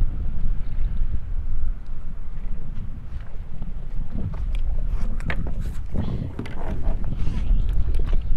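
Low, fluctuating rumble of a small boat out on the water, with wind buffeting the microphone. A few sharp clicks and knocks come between about four and six seconds in.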